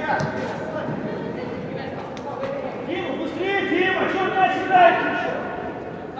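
Indistinct shouting voices in a large indoor sports hall, loudest from about three to five seconds in, with a few short sharp knocks in the first couple of seconds.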